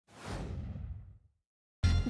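A whoosh sound effect: a swish of noise that falls in pitch and fades away over about a second, followed by a short silence. Near the end a low hum of room tone cuts in abruptly.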